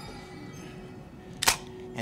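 Quiet room tone broken by a single sharp click about one and a half seconds in, from the Nokia mobile phone being handled as the character answers it.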